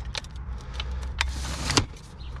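Telescopic aluminium ladder being extended by hand, its sections sliding out and latching with about four sharp metallic clicks, the last two the loudest, over a low steady rumble.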